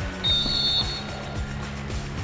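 Referee's whistle blown once in a single high, steady blast of under a second, over background music with a sliding bass line.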